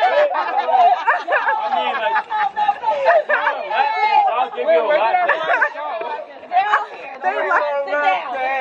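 Chatter of several people talking over one another, with a brief lull about six seconds in.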